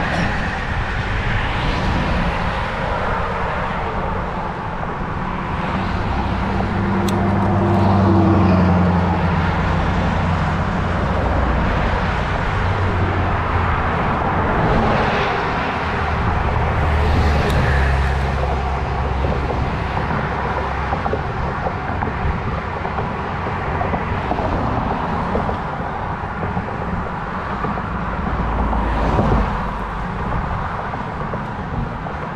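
Wind and road noise from a bicycle riding along a highway shoulder, with motor vehicles passing in the next lanes. One vehicle goes by about eight seconds in, its tone dropping in pitch as it passes, another about halfway through, and a further swell comes near the end.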